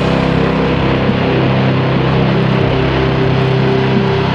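Minimal drone-doom metal: a heavily distorted electric guitar chord held as a steady, unchanging drone.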